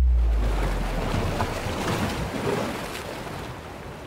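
Logo-animation sound effect: a sudden deep boom that opens into a rushing wash of noise, fading away over the next few seconds.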